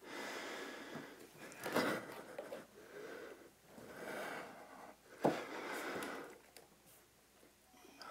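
Heavy breathing from exertion during handstand kick-ups: about five loud breaths roughly a second apart. A single sharp knock, the loudest sound, about five seconds in.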